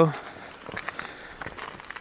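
Footsteps of a walker on a loose gravel and rock hiking track, a quiet irregular series of steps.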